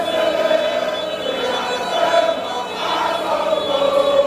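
A large crowd of football supporters singing and chanting together in unison, a steady mass of voices.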